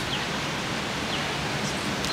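Steady outdoor city background noise with no single clear source: a hiss-like hum of the surrounding downtown, with a few faint distant voices.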